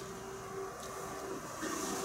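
Quiet room tone in a pause between spoken sentences: a faint, steady hiss with a thin hum.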